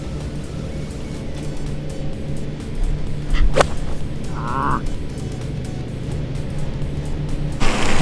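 A 7-iron striking a golf ball once, a sharp click about three and a half seconds in, over steady background music.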